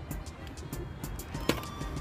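Background music with a steady beat over a low rumble, with one sharp click about one and a half seconds in.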